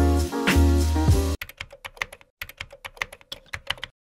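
Upbeat music with a heavy bass line cuts off about a third of the way in. A rapid run of keyboard-typing clicks follows, a typing sound effect for on-screen title text, and stops just before the end.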